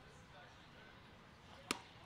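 Faint ballpark ambience, then one sharp pop near the end: a pitched baseball smacking into the catcher's mitt.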